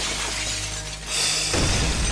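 Glass shattering in a TV drama's soundtrack: a long, noisy crash of breaking glass, with a second sharp burst of glass a little after a second in.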